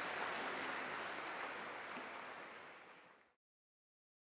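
Audience applauding, fading away and cutting off to silence a little over three seconds in.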